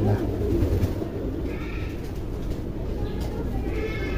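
Racing pigeons in their loft cages cooing, soft and continuous.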